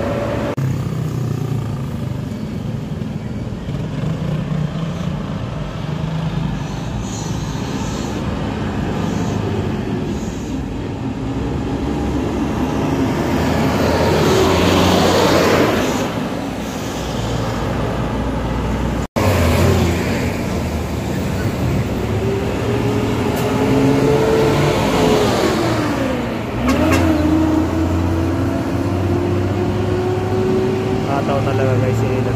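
Road traffic passing close by. An intercity coach bus goes past at speed with a building rush of engine and tyre noise that peaks about halfway through. After an abrupt cut, more vehicle engines drone past, their pitch rising and falling.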